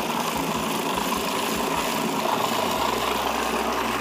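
Electric blender motor running steadily, with a constant whir, as it purées raw salmon, egg and cream into a mousse.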